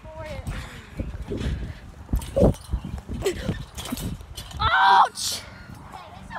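Irregular thuds of someone bouncing and landing on a trampoline mat, then a loud yelp near the end.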